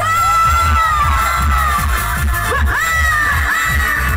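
Loud live band music through a PA, with a heavy pulsing bass beat, while a crowd shouts and cheers over it. A long high held note sinks slowly, and two high notes swoop upward near the end.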